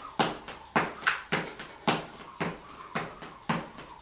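Single-leg rope skipping: the jump rope slapping the gym mat floor and the shoe landing, in an even rhythm of about two strikes a second.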